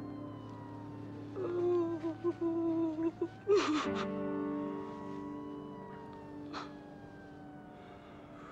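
Film score of long held chords, with a woman sobbing over it: a wavering, broken whimper from about a second in, then a sharp gasping breath a little after three seconds, and a smaller catch of breath near the seventh second.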